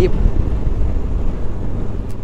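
Wind blowing across the microphone of a moving Suzuki V-Strom 1050XT motorcycle, with its V-twin engine running steadily underneath; the noise eases slightly toward the end.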